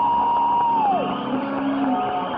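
Rock band's final held high note, sliding down and cutting off about a second in, followed by a weaker, lower sustained tone as the song ends.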